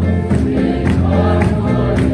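A church congregation singing a worship song together over amplified music, with a steady beat about twice a second.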